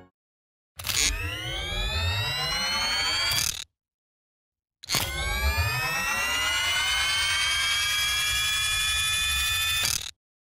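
Two electronic rising swells, each a cluster of tones gliding upward together after a sharp opening hit. The first lasts about three seconds and the second about five, and each cuts off suddenly.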